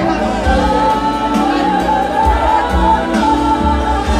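Live gospel worship music: voices singing a wavering melody over long held instrumental chords and a low bass.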